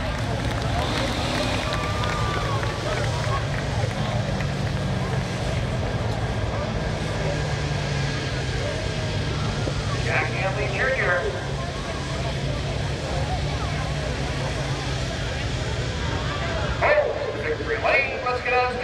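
A street stock race car's engine running steadily at low speed, cruising slowly on a victory lap, with crowd chatter around it and short bursts of people's voices about ten seconds in and near the end.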